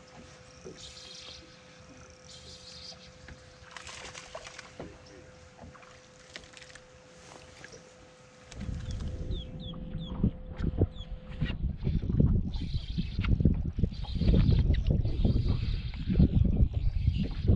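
Wind buffeting the microphone on an open boat deck: a loud, gusting rumble that comes in about halfway and keeps rising. Before it, quiet open-water air with a faint steady hum and scattered short chirps.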